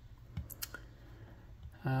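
A few faint sharp clicks about half a second into a quiet room, then a hesitant spoken 'um' at the very end.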